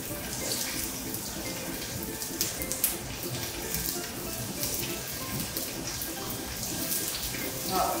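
Chopped onion and carrot sizzling and crackling steadily in hot olive oil in a frying pan, stirred with a wooden spoon.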